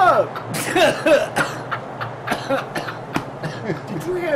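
Comic non-verbal vocal noises from a voiced cartoon character: a voice swooping up and down at the start, then short cough-like bursts and brief grunts and squawks, with no clear words.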